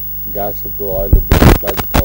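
A man speaks briefly. About a second and a half in, a loud crackling burst and a few sharp clicks follow: a handheld microphone being knocked or handled. A steady mains hum runs underneath.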